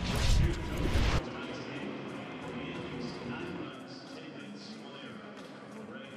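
A broadcast graphics transition sound effect: a loud swoosh lasting about a second that cuts off suddenly. It is followed by quieter background sound.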